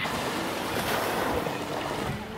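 Sea surf washing on a beach, a steady rushing noise mixed with wind on the microphone.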